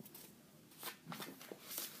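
A book's paper pages and cover rustling as it is handled and moved: a few short rustles in the second half.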